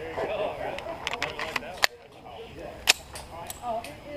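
Sharp metallic clicks of handguns being loaded and readied: a quick run of clicks, then two louder snaps about a second apart, with murmured voices underneath.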